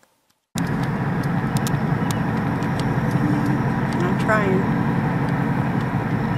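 A car driving along, with a steady run of engine and road noise heard from inside the car, starting suddenly about half a second in.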